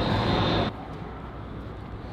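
Steady low rumble of idling car engines. A louder rush of noise in the first moment cuts off abruptly, leaving the rumble.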